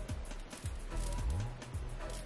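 Background music with a deep bass line that slides in pitch about once a second.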